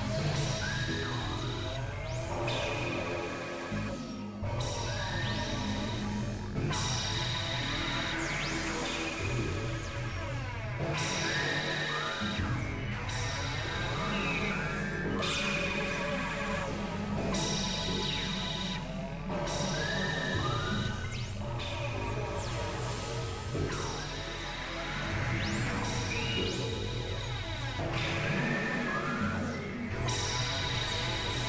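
Experimental electronic synthesizer music: several drone and noise tracks layered at once, with repeated swooping tones and a pulsing low end, broken by brief gaps every couple of seconds.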